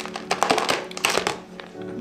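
Dense crackling and rustling of chunky tree fern substrate and a thin plastic cup as the substrate is dug out by hand, fading out about halfway through. Soft background music plays under it.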